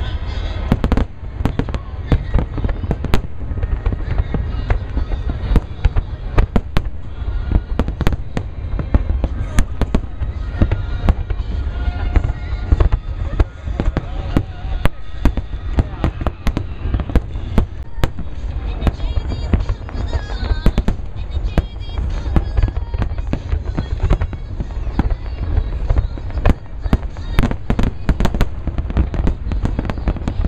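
Aerial fireworks shells bursting in a dense, continuous barrage, several sharp booms a second over a deep rumble.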